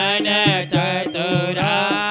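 Hindu devotional aarti hymn to Shiva, a voice singing long, gliding held notes over steady instrumental accompaniment with regular percussion strokes.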